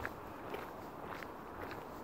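Faint footsteps of a person walking on a paved street, a few spaced steps, with a sharp knock right at the start.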